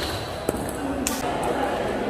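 Table tennis ball clicking off bat and table in play: three sharp clicks, at the start, about half a second in and about a second in, with voices in a reverberant hall.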